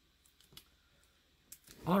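A couple of faint clicks as comic books are handled and let go on a table, in otherwise near quiet, before a man starts speaking near the end.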